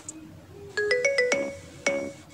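Background music of struck, bell-like notes. There is a short quiet gap, then a quick rising run of notes about a second in, and another note near the end.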